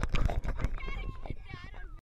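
People talking near the camera with no clear words, one voice high and wavering near the end, over a scatter of short clicks and knocks.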